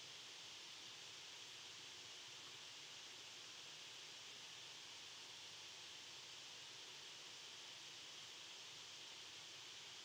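Near silence: a steady, faint hiss.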